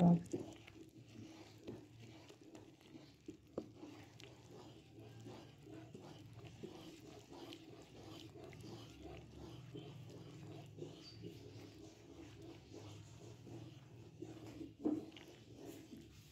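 Wooden spatula stirring and scraping milk that is cooking down to khoya in a kadhai, the thick mixture bubbling with small irregular pops and clicks over a low steady hum. One brief louder sound comes near the end.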